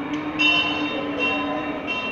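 Temple bells ringing: repeated metallic strikes about every 0.8 s, each leaving bright high ringing tones, over a steady lower tone.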